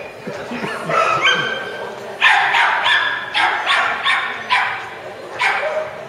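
A small dog barking in a quick run of sharp, high-pitched barks, a few at first and then about half a dozen close together.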